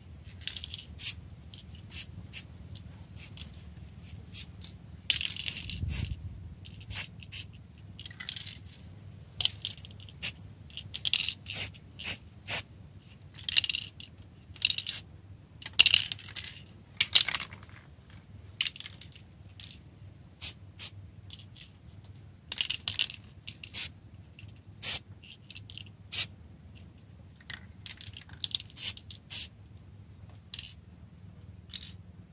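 Hand pruning shears snipping twigs off a dug-up yellow mai (Ochna) tree: a long series of sharp clicks and cuts, with the leafy branches rustling in short bursts as they are handled.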